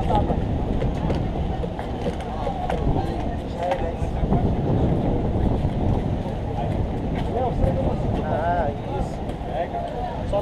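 Steady low rumble of wind buffeting the microphone, with people's voices in the background.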